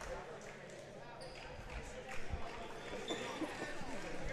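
Gymnasium background of distant crowd chatter, with a few low thumps of a basketball bouncing on the hardwood floor.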